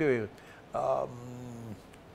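A man's voice says a short word, then holds a drawn-out hesitation sound for about a second while searching for his next word.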